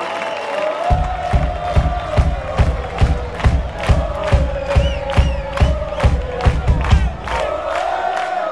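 Live rock concert with crowd noise: a held, wavering tone carries on throughout. About a second in, a steady drum beat joins it at about two and a half beats a second, deep thumps with sharp strikes on top, and stops shortly before the end.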